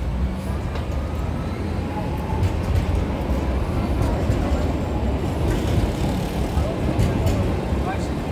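Street traffic with a motor vehicle's engine running close by, a steady low rumble, under the voices of passersby.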